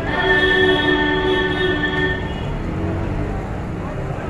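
A horn sounds a steady chord of several notes for about two seconds, then stops. Under it runs the continuous low roar of the wok's gas burner.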